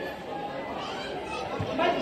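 Crowd chatter: many people talking at once around the clothing tables.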